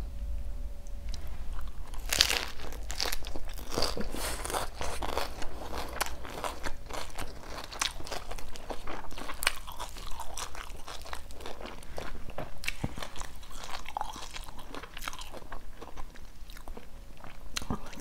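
Close-miked crunching and chewing of a crisp Vietnamese fried spring roll (chả giò) wrapped in lettuce and herbs, with many sharp crunches throughout. The rolls are fried twice, which makes them crisp.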